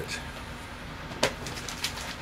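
Quiet room with two light clicks, a little past a second in and near the end, from a record album being handled.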